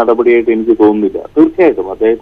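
Speech only: a man talking.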